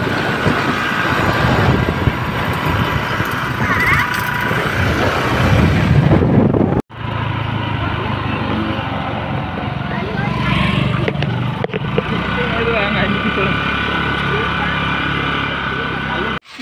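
Motor scooter running along the road, its engine steady under wind rushing over the microphone. The sound breaks off abruptly about seven seconds in and resumes, with a brief dip again near twelve seconds.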